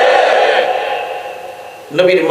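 A man preaching through a public-address system, drawing out one long syllable that fades away, with new speech starting at the very end.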